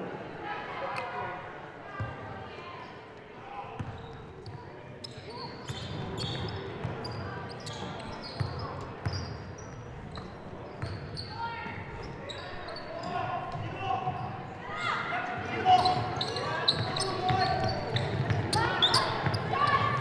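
Basketball game sound in a high school gym: a ball bouncing on the court amid scattered voices of players and spectators, with short sharp knocks throughout.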